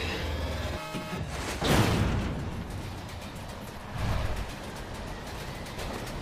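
Anime action soundtrack: background music over a steady low rumble, with a sudden loud hit and falling whoosh just under two seconds in and a smaller low swell about four seconds in.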